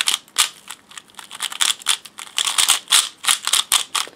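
Plastic 3x3 speed cube being turned by hand: quick, irregular clacking of the layers, several turns a second, bunched into a fast run of turns past the middle.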